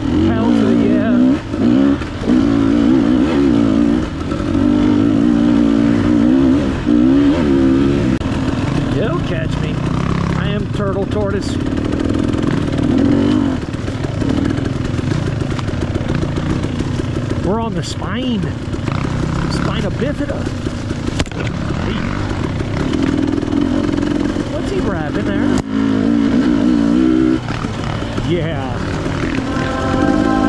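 Dirt bike engine revving up and falling back again and again as it rides along rough dirt singletrack, with a few sharp knocks about ten seconds in and again near the middle.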